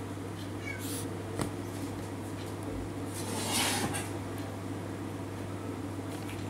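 A kitten mewing, loudest a little past the middle, over a steady low hum.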